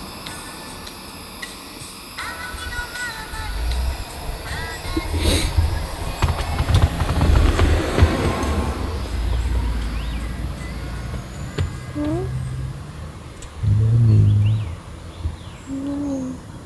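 A heavy vehicle passing on the road beside the parked van: a low rumble that swells over a few seconds and fades away. A short low voice-like sound follows near the end.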